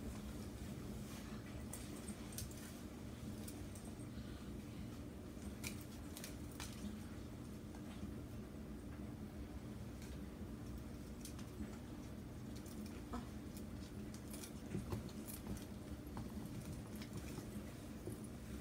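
Faux-leather moto jacket being put on and adjusted: faint scattered rustles and light clicks of its zippers and metal hardware, over a steady low hum.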